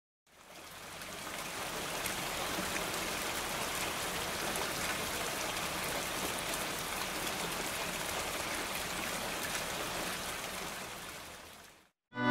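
Steady rain falling, with faint scattered drop ticks, fading in over the first couple of seconds and fading out near the end.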